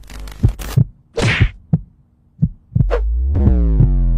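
Edited video-intro sound effects: a run of sharp hits and a whoosh, then, from near three seconds in, a deep bass boom whose pitch slowly falls.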